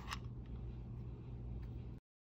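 A light click as a metal piece is pushed into the socket on the back of an August Wi-Fi Smart Lock, then a fainter click near the end, over a steady low hum.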